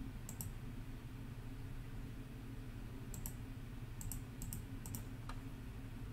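Faint, scattered clicks of computer keyboard keys: a pair near the start, another pair about three seconds in, then a quick run of about six between four and five and a half seconds, over a low steady room hum.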